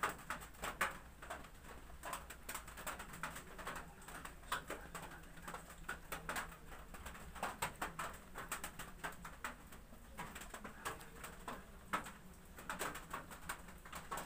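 Irregular short rustles and light taps of hair being combed and handled with a plastic comb, over faint bird cooing in the background.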